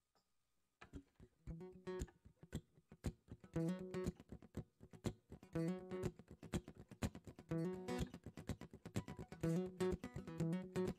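Acoustic guitar starting a song's intro about a second in: a rhythmic pattern of strummed chords with sharp, choppy strokes between them.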